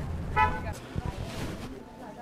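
Parking-lot ambience with a short, high toot about half a second in, like a car horn chirp, and a single knock about a second in.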